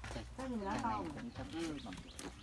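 Indistinct voices of people talking, over a low steady hum.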